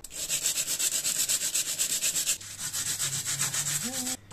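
A dried, hardened tofu blade being rubbed fast back and forth on fine sandpaper to sharpen its edge: a rapid run of rasping strokes, about nine a second, with a short pause about halfway through before the strokes resume.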